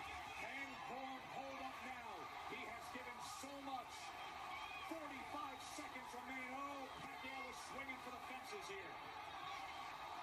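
Television boxing broadcast: a man's commentary voice talking without pause over a steady background noise, heard from a TV's speaker.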